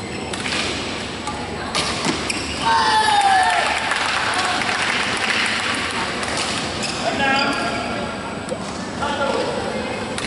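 Badminton racket strokes on a shuttlecock, a few sharp taps in the first couple of seconds, with voices and shouts echoing in a large sports hall.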